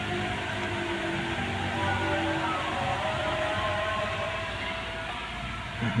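Steady rain falling, a continuous hiss, with a few faint held tones coming and going underneath and a short bump near the end.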